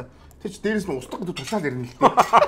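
Cutlery and dishes clinking at a dining table, under a man's voice talking from about half a second in.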